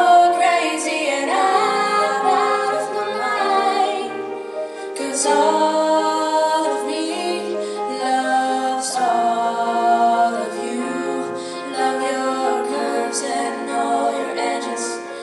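Female vocals singing a pop ballad live, accompanied by a grand piano.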